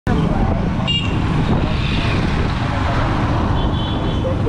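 Motorcycle running through street traffic, with a steady engine rumble and wind and road noise. A short horn toot sounds about a second in.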